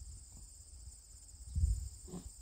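Crickets chirping in a steady high-pitched trill, with a low rumble on the microphone about one and a half seconds in.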